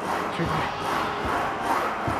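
A man straining and breathing hard through the last heavy reps of a calf-raise set, a continuous effortful, breathy vocal noise over busy gym background noise.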